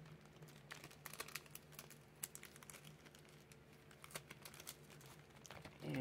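Faint crinkling and scattered light clicks of a nail stamping plate and its packaging being handled.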